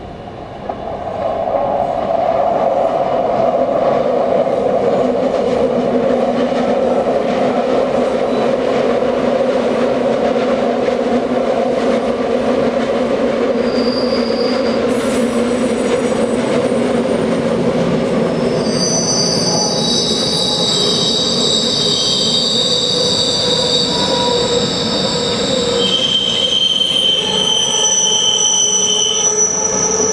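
A metre-gauge Bernina Railway electric train passing close by. Its running rumble swells about a second in. From about halfway on, high steady wheel squeal rises as the wheels grind round the curving track, in several tones that change pitch near the end.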